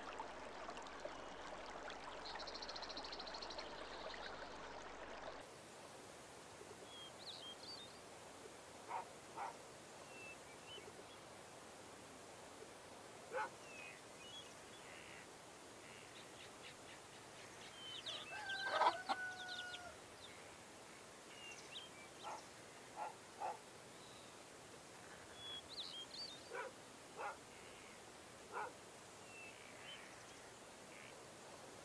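Faint scattered bird calls and chirps, with one louder, briefly held call near the middle. A steady hiss runs under the first five seconds and then stops.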